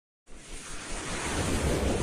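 Rushing noise sound effect for an animated logo intro: silence, then a swell of noise about a quarter second in that builds steadily louder.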